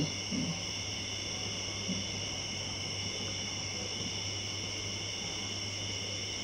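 Steady high-pitched chirring of insects over a steady low hum, with two faint short low sounds, one near the start and one about two seconds in.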